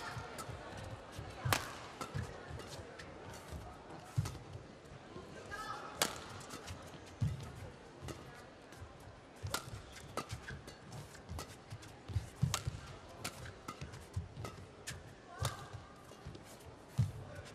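Badminton rally: sharp cracks of rackets striking the shuttlecock, the loudest about 1.5, 6 and 12.5 seconds in. Between them run low thuds of the players' footwork on the court.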